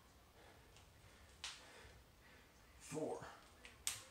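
A man's breathing between squat repetitions: a quick sharp breath about a second and a half in, a short spoken rep count near three seconds, and another sharp breath just before the end.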